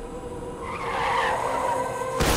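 Car tyres squealing in a skid, swelling to a peak about a second in, over a steady humming drone.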